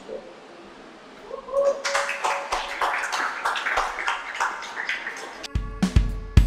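A small audience clapping after a spoken poem, with a voice or two among the claps; near the end a drum-kit beat comes in with heavy bass-drum hits.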